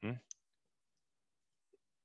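A man's short questioning 'mm?', then a single sharp click about a third of a second in, as he works at the computer; the rest is quiet room tone.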